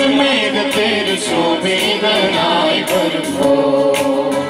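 A group of girls singing a hymn together into microphones.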